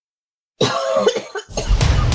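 A short cough about half a second in. Then, about a second and a half in, a loud bumper of music with booming hits starts and keeps going.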